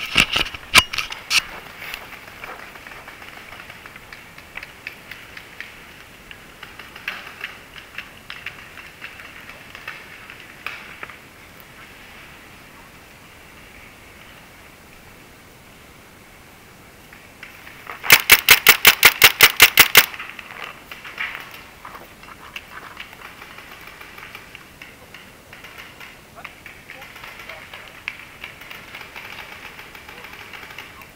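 Paintball marker shots: a few sharp shots in the first second or two, then a rapid string of about a dozen evenly spaced shots lasting about two seconds past the middle. Fainter scattered pops come and go in between.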